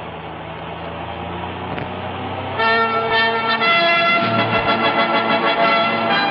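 A steady low vehicle rumble for the first couple of seconds. About two and a half seconds in, a louder brass fanfare of held chords begins.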